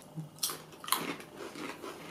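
Crunching of ridged potato chips being bitten and chewed: two sharp, crisp crunches in the first second, then softer, smaller crunches of chewing.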